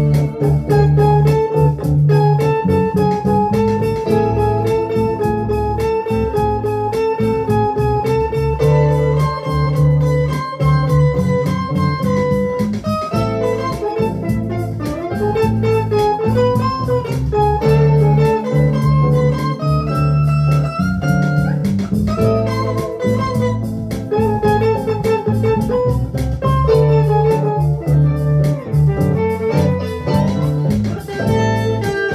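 Electric guitar played instrumentally: fast picked notes and a moving melody line over a held low note that changes every few seconds.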